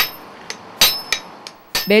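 Hammers striking red-hot iron on a blacksmith's anvil: about five sledgehammer and hand-hammer blows at an uneven pace, the loudest ones ringing briefly.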